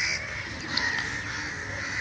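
Birds calling faintly in the background over a steady hiss, with a couple of faint soft clicks.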